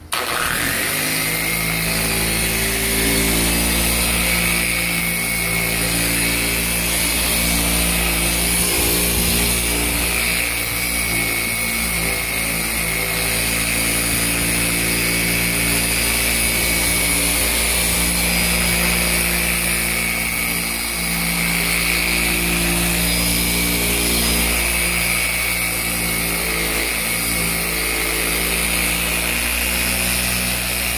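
Chicago Electric 6-inch random orbital polisher switched on, spinning up within about a second, then running steadily as its foam pad buffs polish on a plastic headlight lens.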